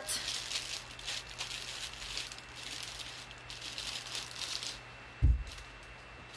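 Light clicking and rattling of small objects being handled, then one dull thump about five seconds in.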